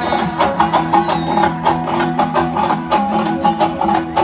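Live amplified band music: an instrumental break in a song, led by a plucked string instrument struck in quick, regular strokes over a steady low sustained note.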